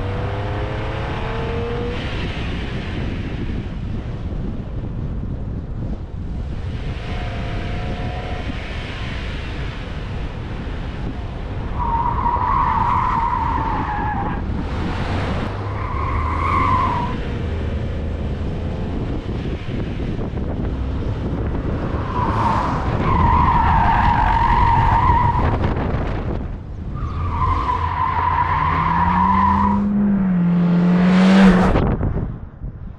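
Honda Civic RS Turbo (1.5-litre turbocharged engine) driven hard, with a steady rush of engine and road noise. Its tyres squeal four times in the second half, the last two squeals drawn out over a few seconds.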